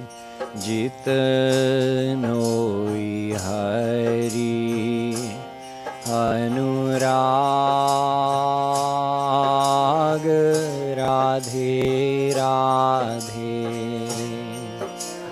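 A man's solo voice singing a Hindi devotional couplet in long held notes with ornamented glides between them, over a harmonium's steady low drone and chords. A light, regular percussion tick keeps time underneath.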